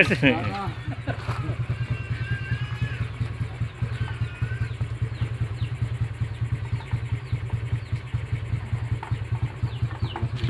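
Custom drag-style motorcycle engine idling steadily, with a fast, even pulse.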